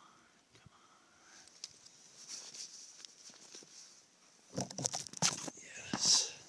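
Faint crackling and rustling of dry twigs as a kindling bundle is laid over burning wood shavings. About four and a half seconds in, louder rustling and knocks sound close to the microphone.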